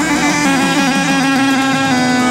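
Live Middle Eastern dabke music with no singing: a reed pipe plays a run of quick, stepping-down notes over a low drone note that is held steady throughout.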